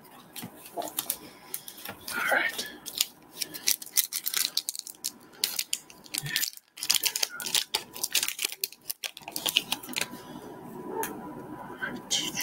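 Pokémon booster pack and trading cards being handled: a dense run of crackly crinkles and sharp ticks, pausing briefly a little past halfway.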